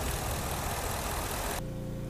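A 2017 Ford F-150's 5.0-litre V8 idling steadily, heard with the hood open. It cuts off suddenly about one and a half seconds in.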